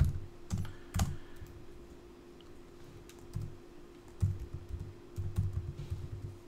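Typing on a computer keyboard: a few keystrokes, a pause of about two seconds, then quicker runs of keystrokes near the end, over a faint steady hum.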